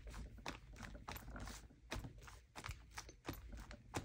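A small ink pad dabbed repeatedly onto a rubber stamp to ink it: faint, irregular soft taps and light clicks.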